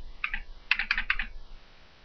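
Computer keyboard keys being typed: two keystrokes about a quarter second in, then a quick run of about six around one second in.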